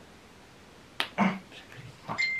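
A single sharp snap about a second in, as a small treat from an advent calendar is bitten, followed by a brief low voice sound.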